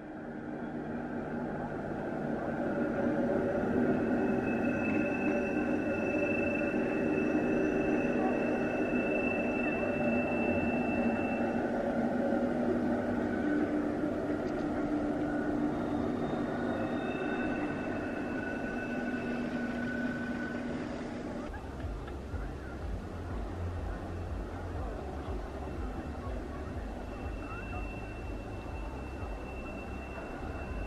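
Electric Matterhorn Gotthard Bahn train running on its line, a steady whine of several held tones with a high-pitched tone above them. About two thirds of the way through the sound changes suddenly to a low rumble with the train's tone faint behind it.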